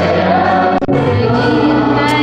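Worship song sung by a small group of male and female singers on microphones, holding long, slow notes over electric guitar accompaniment.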